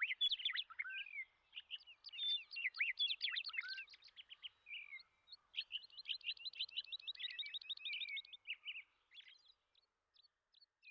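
A songbird singing: a run of varied quick chirps and whistles, a short pause, then a fast, even trill of about three seconds, with a few faint chirps near the end.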